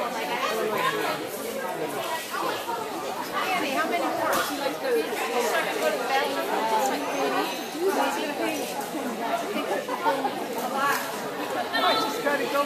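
Many people talking at once in a large indoor hall: a steady, indistinct chatter of overlapping voices with no single clear speaker.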